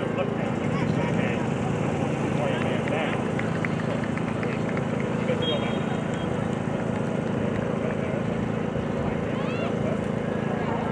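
Indistinct, distant shouting and chatter from players, coaches and sideline spectators at an outdoor soccer match, over a steady low background noise. No single sound stands out.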